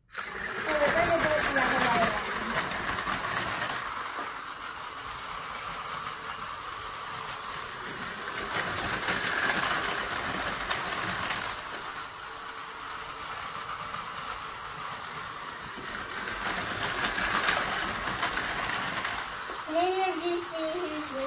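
Two battery-powered Tomy Plarail toy trains, one of them the MSE Romance Car, running on plastic track. Their small motors and gears make a steady buzzing whir that starts suddenly as they are set off, then swells and fades about every eight seconds as the trains come round past the microphone.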